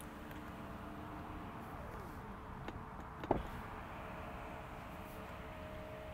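Tesla Model 3 power window motor running as the frameless glass slides through its door seals: a quiet, steady hum with no squeak, the seals having just been treated with a rubber seal conditioner that has cured the squeaking. The hum winds down and stops about two seconds in. A single click comes about a second later, then the window motor hums again until the end.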